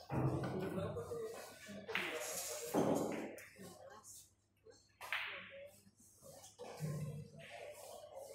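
Indistinct background voices in a billiard hall, with a couple of sudden sharp sounds, one at the very start and one about five seconds in.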